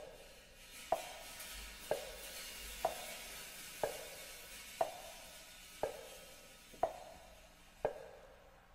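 A steady metronome-like click, about one a second, each a short sharp tick with a brief ring. Behind it a soft hiss swells and fades, like the quiet opening of a concert band recording.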